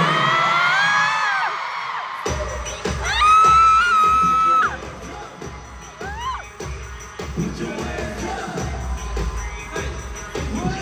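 Arena crowd screaming in a dark pause, then a pop song's deep bass beat starts about two seconds in. A loud, long high held note rises over it briefly, and the beat-driven music carries on with crowd noise underneath.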